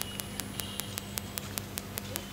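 Steady electrical hum with faint hiss and rapid, evenly spaced clicks of static, about seven a second, on the audio feed.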